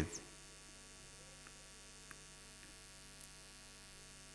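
A pause in a talk filled by a faint, steady electrical mains hum from the sound system, with a few tiny faint ticks. A man's last spoken word ends right at the start.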